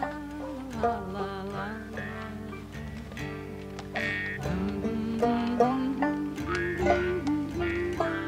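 Instrumental folk music: plucked strings under a held melody line that slides up and down between notes.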